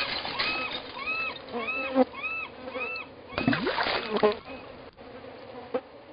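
Seagull calling repeatedly, a string of short rising-and-falling cries about two a second that stops about halfway through, over clattering knocks and thuds of a dumped load of debris. The sound fades out near the end.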